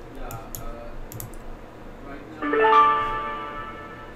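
A few clicks, then a softphone call connecting to the ShoreTel voicemail system: a short rising chime of pitched tones, each note entering above the last, ringing on and fading out.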